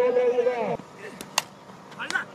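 A man's voice holding one long drawn-out call that breaks off under a second in. A little later comes a single sharp crack, a cricket bat striking a taped tennis ball.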